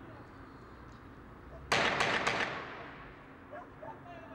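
Three gunshots in quick succession, about a quarter second apart, about two seconds in, each trailing off in an echo that dies away over about a second.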